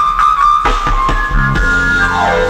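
Instrumental music: a lead melody holding a long note over low sustained bass and percussion hits, stepping up to a higher held note about two-thirds of the way through.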